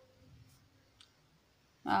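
Pen writing on notebook paper, faint scratching with a small click about a second in; a voice starts speaking near the end.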